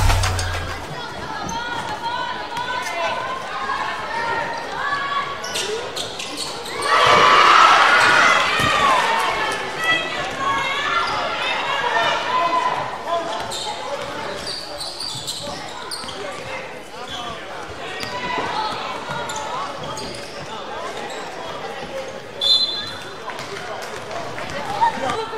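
Gym sound of a girls' basketball game: a ball dribbling on the hardwood court under steady spectator chatter and calls, with a louder surge of crowd shouting about seven seconds in. A brief high whistle blast, the referee's, sounds near the end.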